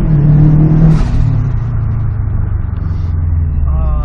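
Subaru Impreza WRX STI's turbocharged flat-four engine, heard from inside the cabin just after a launch. It holds high revs for about a second, and after a short burst the revs fall away steadily.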